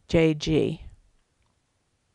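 A voice speaking for about a second, the end of a spoken phrase, then near silence.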